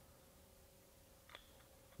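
Near silence: room tone with a faint steady hum and one faint click about a second and a third in.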